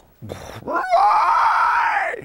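A man imitating a dinosaur roar with his voice: a short burst, then one long, loud roar held for over a second.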